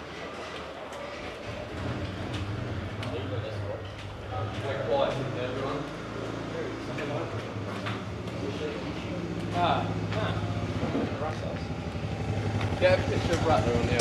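Quad bike engine running at low revs, a steady low hum that sets in about two seconds in and grows louder near the end, with scattered voices and clicks around it.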